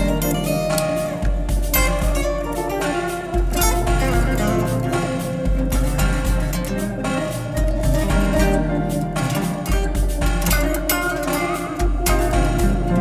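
Fender Jazzmaster electric guitar picking notes live over a layered guitar loop played back from a looper. A low bass part, the loop pitched down an octave, comes in blocks about every two seconds.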